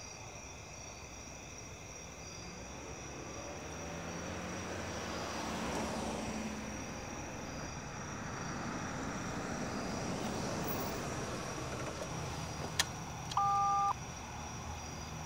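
A car driving up, its engine and tyre noise swelling and easing. Near the end comes a click, then a short, loud two-tone electronic buzz from a gate intercom.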